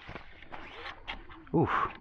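Fishing reel drag clicking as a hooked fish pulls line off against it, soft and irregular.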